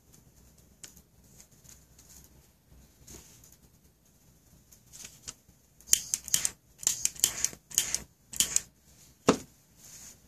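A quick run of sharp clicks and taps from about six seconds in, bunched in several short flurries, ending with one heavier knock a little after nine seconds.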